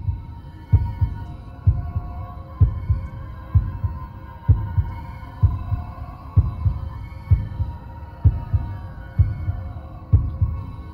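Logo-intro sound design: a deep double thump, like a heartbeat, repeating just under once a second over a steady droning tone.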